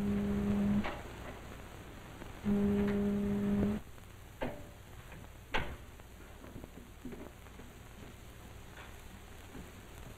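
Ship's foghorn giving two long, low, steady blasts, the second a little longer than the first. A few sharp knocks follow, about four and five and a half seconds in.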